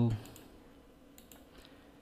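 A few faint computer mouse clicks, spaced about a second apart.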